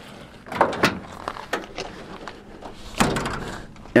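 A Ram pickup's tailgate being unlatched and lowered: a couple of clicks and knocks, then a louder clunk with a short ringing tail about three seconds in as it comes down.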